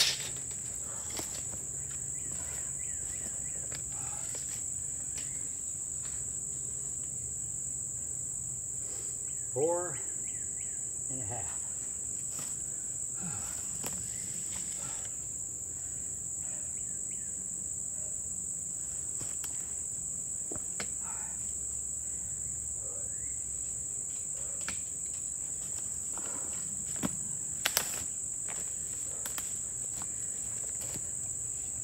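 Steady, high-pitched drone of insects calling in the woods. It is broken by a short vocal grunt about ten seconds in, a few light rustles and footsteps, and a quick cluster of sharp clicks near the end.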